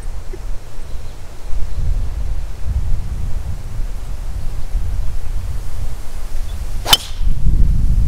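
Driver striking a golf ball off the tee: one sharp crack near the end. Wind rumbles on the microphone throughout.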